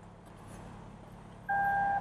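Warning beep from a 2023 BMW 760i xDrive's power trunk lid: a single steady electronic tone starting about one and a half seconds in, signalling that hands-free kick-to-close has been triggered and the lid is about to close. Before it there is only faint outdoor background.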